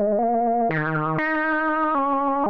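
Korg Mono/Poly analog synthesizer playing a sustained, buzzy lead line with vibrato, stepping to a new note about every half second; one note near the middle opens bright and falls away in tone.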